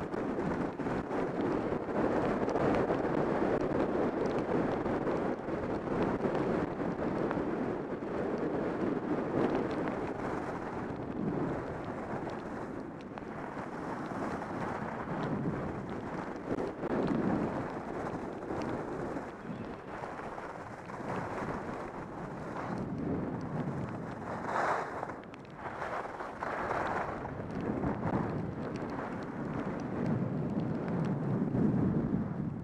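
Wind buffeting a moving camera's microphone during a fast run down a groomed ski trail, mixed with a continuous scraping hiss of snow under the rider, rising and falling with the turns.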